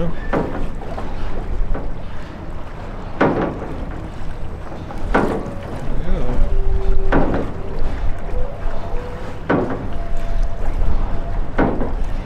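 Loose metal pieces along the edge clanging: about six separate strikes at uneven intervals of roughly two seconds, each ringing briefly.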